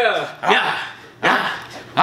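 A man letting out short, loud, bark-like shouts, each one cut off quickly, a little under a second apart.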